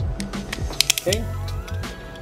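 A few small plastic clicks from a Beyblade top being handled as its anti-burst lock is worked slowly back to normal, bunched a little before the middle, over background music.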